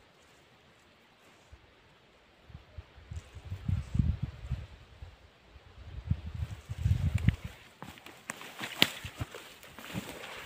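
Footsteps and the rustle of brush as a person pushes through dense wild rose bushes. The sound starts a couple of seconds in and comes closer, with sharp crackling of branches and leaves near the end.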